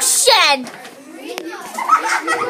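A child's voice briefly at the start, then quieter room noise with a single click, and children's voices rising again near the end.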